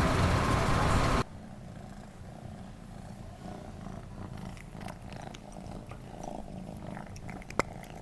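City street traffic noise for about the first second, then an abrupt cut to a house cat purring steadily close to the microphone, with a few faint clicks near the end.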